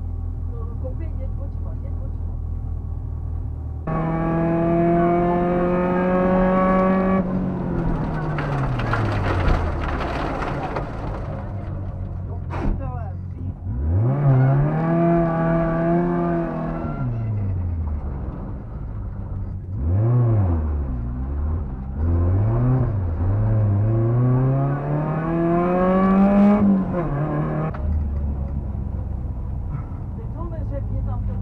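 Škoda 130 rally car's four-cylinder engine heard from inside the cabin: idling at the stage start, then driven hard away about four seconds in, its pitch climbing and falling again and again as it accelerates and slows. A brief sharp knock comes about halfway.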